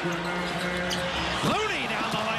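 Basketball game sound in an arena: the ball bouncing and play on the hardwood court amid crowd noise, with a commentator's voice.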